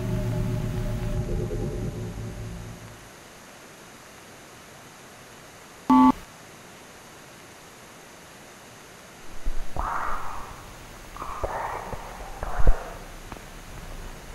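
Low sustained music tones fading out over the first few seconds, then faint hiss. About six seconds in comes a single short electronic beep, like a telephone keypad tone. Near the end, a few irregular scuffing noises and one sharp knock.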